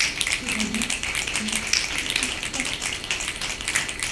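Audience snapping their fingers in a dense, steady patter of many quick sharp clicks, the poetry-slam sign of approval for a line.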